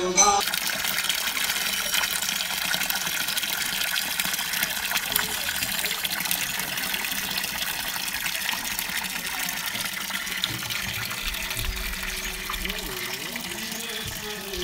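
Water pouring steadily from a carved stone spout and splashing below, a steady gushing noise that fades slightly toward the end.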